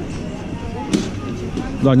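Open-air street ambience: steady low rumble with faint distant voices and one sharp knock about a second in, then a man close to the microphone starts speaking near the end.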